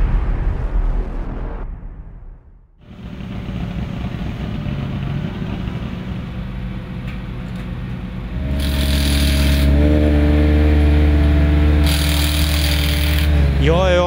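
Theme music fading out, then a rally car's turbocharged four-cylinder engine, the Ford Focus RS WRC's, running steadily at idle in the service area, louder from about eight seconds in, with two short bursts of hiss over it.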